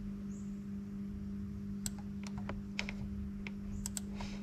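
Light, irregular clicks of a hand handling and flicking the edge of a lined paper pad, a run of about nine in the second half, over a steady low hum.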